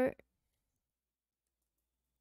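A woman's spoken word ends just after the start, with a faint click right after it, then dead silence.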